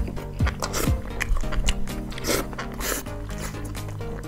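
Background music with held notes and a drum beat about twice a second at first, over close-miked chewing and crunching of a fried stuffed tofu (tauhu begedil) mouthful.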